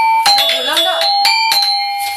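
Tuned keys of a Balinese traditional percussion instrument struck one after another, each note ringing on. A voice is heard briefly between the notes.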